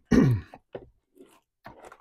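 A man clears his throat once, a short gruff burst falling in pitch. It is followed by a few faint clicks and scrapes of a plastic DVD case being drawn off a shelf.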